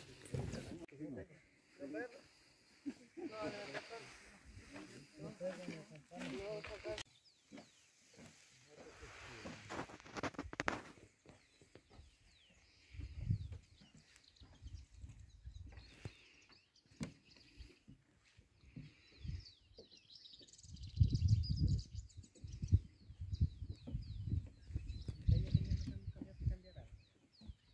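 Indistinct voices of people talking in the first several seconds, then scattered low thuds and rumbles of footsteps on a wooden boardwalk, with faint bird chirps near the end.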